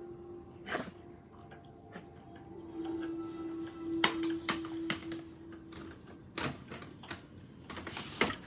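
Handling noise: a few sharp plastic clicks and knocks as a DVD case is held and moved, with a steady low hum underneath from about two to six seconds in.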